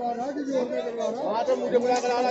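Crowd chatter: several people talking at once, their voices overlapping close by.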